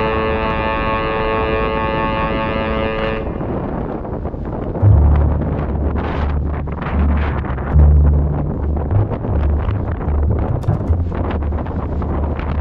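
A held music chord cuts off about three seconds in. After that, wind buffets the microphone of a camera riding on an e-mountain bike, with irregular low rumbling gusts and rolling noise over rough asphalt.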